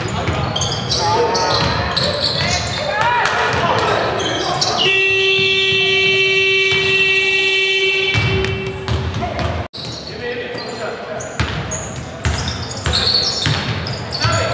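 Scoreboard buzzer in a sports hall, one steady electronic horn held for about three seconds, with basketball bounces on a wooden court around it.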